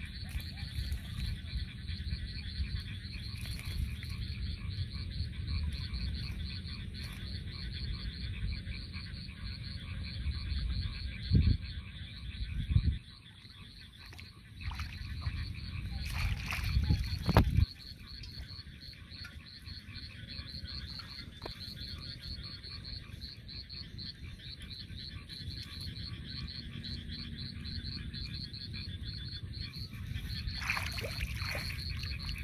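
A steady chorus of frogs calling, a fast, continuous pulsing trill. Around the middle a few louder thumps and rustles break in over it.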